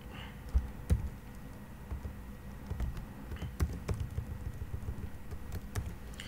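Typing on a computer keyboard: irregular keystrokes entering a line of Java code, with a few louder key hits about half a second to a second in.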